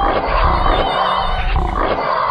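A lion roaring: one long, rough call.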